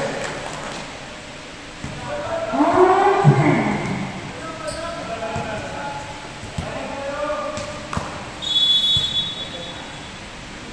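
Players' voices calling and shouting in a reverberant gym during an indoor volleyball game, loudest in one long rising-and-falling shout about three seconds in. A few sharp smacks and bounces of the volleyball come through, with a brief high squeak near the end.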